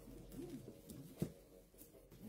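Hardcover books being shifted against each other on a wooden shelf, with one sharp knock a little over a second in. Faint low cooing bird calls in the background.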